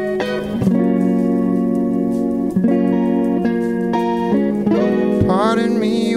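Live rock band playing a funk-tinged song: electric guitars over bass guitar and drums.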